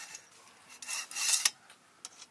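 Tent fabric rubbing and rustling under a person kneeling and shifting on it, with one long swish about a second in.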